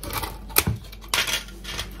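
A few light knocks and scrapes of a spatula against a plastic tub while curd cheese is scooped out, with small kitchen clatter.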